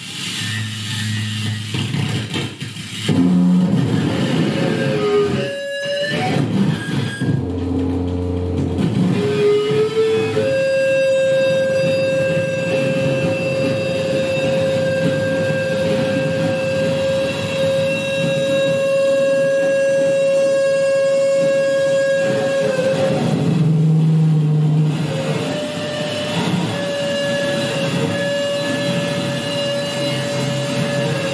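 Live noise-music set from electronics through an amplifier: layered, droning noise with low humming tones and short gliding pitches early on. A steady high tone is held for about twelve seconds in the middle, then breaks off.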